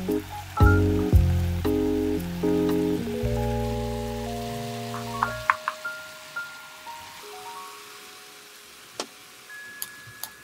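Light background music in chords that stop about halfway through, leaving a few single high notes, over a soft sizzle of julienned radish stir-frying in a pan.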